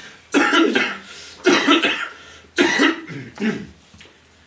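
A man's fit of laughter right after a punchline: four loud, breathy, cough-like bursts about a second apart.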